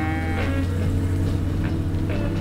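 A cow mooing, the call trailing off within the first second, over a steady low hum and background music.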